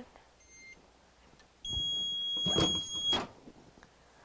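Hotronix Fusion heat press timer sounding one steady high beep of about a second and a half, marking the end of a five-second press, with a brief clatter of the press releasing under its second half. A fainter short beep comes shortly after the start.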